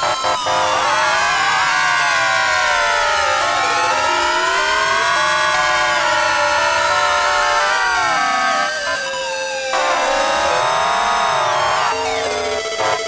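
Electronic music: several layered, pitched tones sweeping slowly up and down together in pitch, siren-like, with a brief dip in loudness about nine to ten seconds in.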